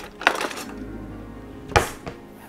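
Metal cutlery clinking in a kitchen drawer as a knife is picked out: a few light clinks, then one sharp clack near the end.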